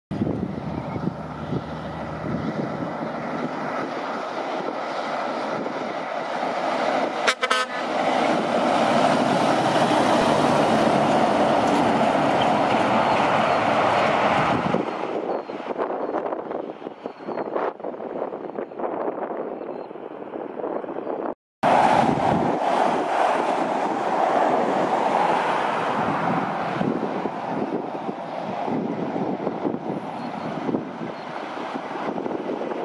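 Road trains passing on a highway: heavy diesel truck engines and tyres build to a loud pass between about 8 and 14 seconds in, then fade. After a brief break about 21 seconds in, another road train is loud again as it approaches.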